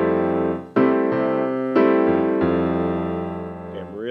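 Piano played slowly, a bossa nova rhythm pattern worked out one hand at a time: a handful of chords and notes struck less than a second apart, each left to ring into the next.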